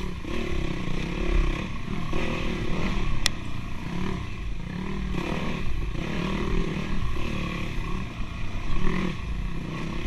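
Dirt bike engine running on and off the throttle, its pitch rising and falling again and again, with one sharp click about three seconds in.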